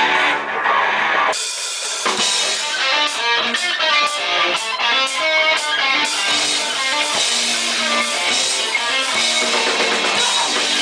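Live punk rock band playing an instrumental intro on electric guitars, bass and drum kit. About a second in the sound thins, then the drums come in with a steady beat.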